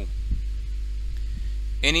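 A steady low electrical hum, like mains hum, runs under the recording, with a few faint ticks. A voice comes in right at the end.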